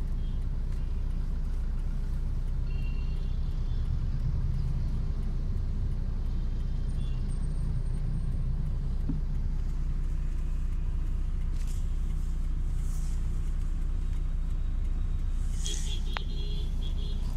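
Steady low rumble of city road traffic and the car's own engine, heard from inside a car, with a few faint short high tones in the first half.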